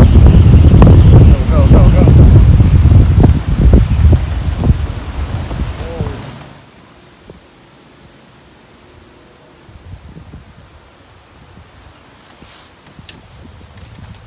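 Wind buffeting the microphone, a loud low rumble that cuts off abruptly about six seconds in. Quiet outdoor background with a few faint rustles follows.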